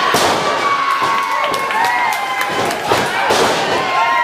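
A wrestler's body slamming onto the ring mat: several heavy thuds, the first right at the start and more about three seconds in, with spectators shouting and calling out.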